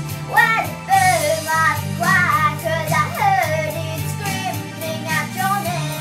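A young girl singing solo, her voice gliding between long held notes, over a steady low instrumental accompaniment.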